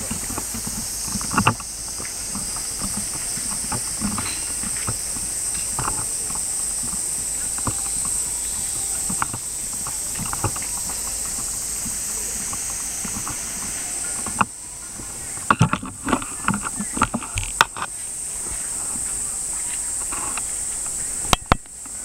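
Night-time outdoor ambience dominated by a steady high-pitched hiss, with scattered clicks and knocks. They come once early on, then in a quick cluster about two thirds of the way through, and once more just before the end.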